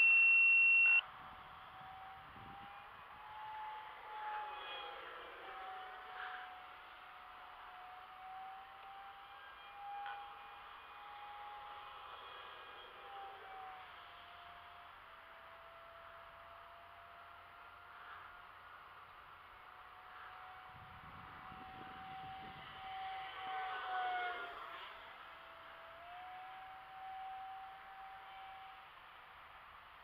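Distant whine of a small electric RC jet's ducted fan as it flies high overhead, the pitch wavering with throttle and dipping then climbing again as it sweeps past, twice. A loud, high beep lasts about a second at the very start.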